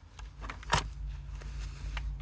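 Plastic multi-pin wiring-harness connector being wiggled and pulled out of a VW Jetta body control module, with a sharp click a little before halfway and a fainter one just before it, over a steady low hum.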